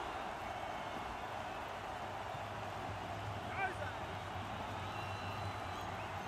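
Quiet steady background noise with a low hum. A faint, distant voice calls out briefly about three and a half seconds in.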